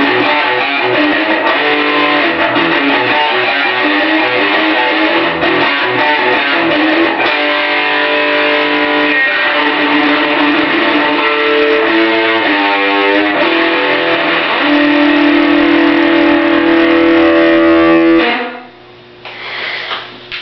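Solid-body electric guitar playing an instrumental lead with effects, including a quick up-and-down run past the middle. It ends on a long held note that cuts off abruptly near the end.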